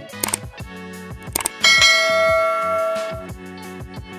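Electronic background music with a steady beat, overlaid with the click and bell-ding sound effects of a subscribe-button animation: a sharp click, then a bell ding about a second and a half in that rings for over a second and fades.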